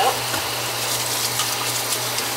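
Kitchen faucet running in a steady thin stream onto wet wool yarn in a small plastic colander in the sink.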